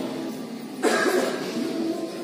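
Two acoustic guitars played softly, their notes ringing on, with one brief, sharp burst of noise a little less than a second in.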